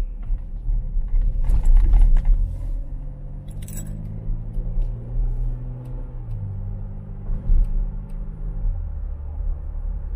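Car engine and road rumble heard from inside the cabin as the car pulls away and speeds up. The engine note climbs, then drops in steps twice as the gears change up. A brief metallic jingling rattle comes in the first few seconds.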